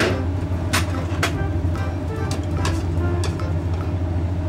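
Dried baby sardines (chirimen jako) frying in oil in a nonstick frying pan, with chopsticks clicking against the pan several times as they are stirred, over a steady low hum.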